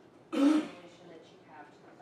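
A woman's single sharp cough, a short burst about a third of a second in, clearing her throat mid-sentence.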